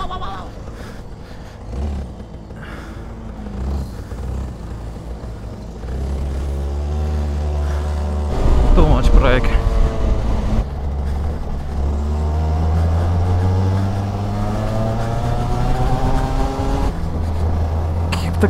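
Onboard sound of a 125cc go-kart engine during a race: quieter for the first few seconds, then pulling harder, with its pitch rising as it revs up through the second half. A brief voice cuts in about halfway.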